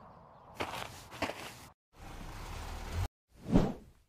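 Cartoon sound effects: footsteps with a couple of sharper knocks, then a steady rushing noise with a low rumble that cuts off suddenly. A short whoosh that swells and fades comes near the end.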